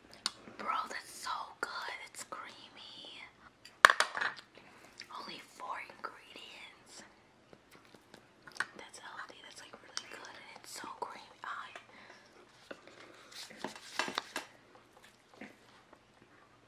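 Two people talking in whispers and low voices while eating, with small clicks of a spoon against a plastic ice cream tub. The loudest is a sharp click about four seconds in.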